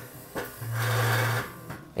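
An object scraped along a surface: a low, steady grinding scrape just under a second long, starting about half a second in. A short tap follows near the end.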